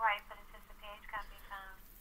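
A person speaking quietly over a conference-call line, the voice thin and cut off above the telephone band.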